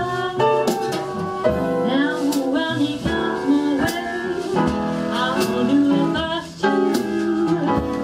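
Live small-band jazz: a woman singing over flute, piano, double bass and drums, with cymbal strokes keeping time throughout.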